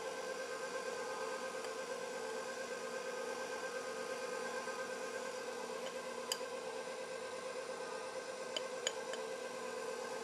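KitchenAid bowl-lift stand mixer running steadily, its motor giving a constant whine as the beater works a thick cake batter. A few light clicks come in the second half.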